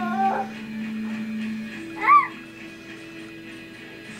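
Baby vocalizing: a short gliding babble at the start, then a brief, loud squeal that rises and falls about two seconds in, over steady held background tones.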